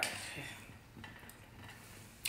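A few faint clinks of a metal spoon against a cooking pot as dal is scooped out to taste, over quiet kitchen room tone.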